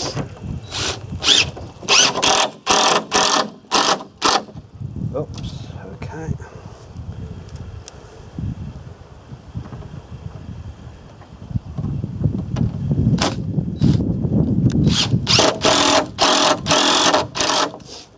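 Cordless drill-driver running in short bursts, driving small screws into thin plywood bottom boards: a string of bursts over the first few seconds, a quieter pause, then another run of bursts from about thirteen seconds in.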